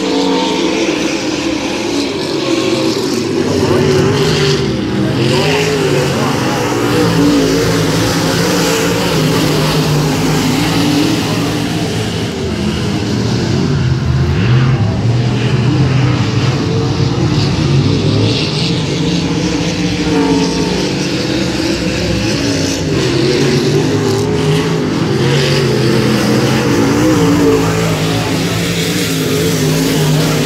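Several dirt modified race cars' V8 engines running around the track together, their pitches rising and falling as the cars accelerate and lift.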